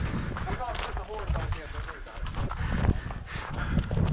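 Faint voices of several people talking in the background, with a few irregular hoof steps of horses and mules on gravel and a low rumble underneath.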